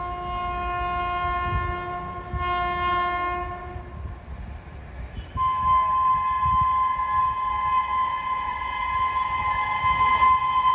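WAP7 electric locomotive's horn blaring as the train approaches at speed: one long blast with a second tone joining partway, a short break around five seconds in, then a louder, higher blast held to the end. A low rumble of the oncoming train runs beneath.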